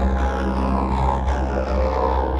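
Loud, distorted, droning music with a deep bass hum and a thick stack of sustained tones, held steady: a logo jingle heavily warped by audio effects.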